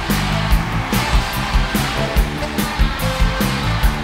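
Live rock band playing an instrumental song intro with a steady driving drum beat, about two to three hits a second. A stadium crowd's noise runs underneath.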